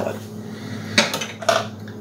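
A glass bowl being set down on a kitchen counter, clinking twice: about a second in and again half a second later.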